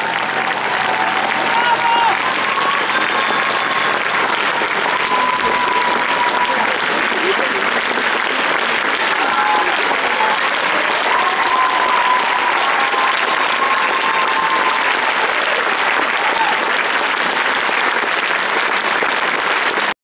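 Audience applauding steadily after a song ends, with a few voices calling out over the clapping.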